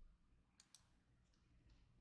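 Near silence: room tone, with a few very faint clicks a little past half a second in.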